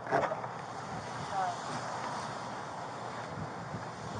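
Steady rustling and wind noise on a body-worn camera microphone as the wearer moves along a wooden fence, with a brief faint voice about a second and a half in.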